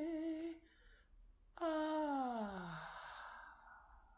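A wordless female voice holds a note that stops about half a second in. After a short breath, a new note enters and slides steadily down in pitch, trailing off into breathy air and fading away.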